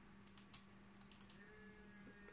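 Near silence with a few faint, quick clicks from a computer being operated, bunched at about a second in, over a faint steady room hum.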